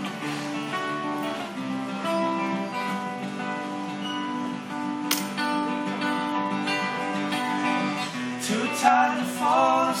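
Two acoustic guitars playing together in an instrumental passage between verses of a folk song. A male voice comes in singing near the end.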